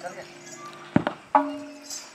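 Mandar barrel drums struck a few single times while the players wait to start: a sharp strike about a second in, then a second stroke whose low ring slowly fades.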